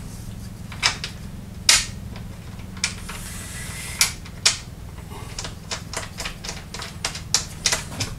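Benchtop band saw being slid and positioned on its mounting table by hand: scattered sharp clicks and knocks of its base and hardware, coming thicker and faster toward the end, over a steady low hum.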